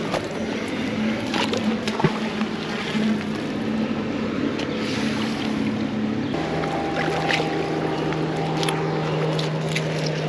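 A motorboat engine running steadily, its pitch dropping suddenly about six seconds in, with a sharp click about two seconds in.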